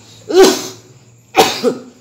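A man coughing twice into the microphone, two short hard coughs about a second apart.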